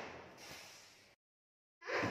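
A hiss that fades away over about a second, followed by a moment of dead silence where the recording is cut.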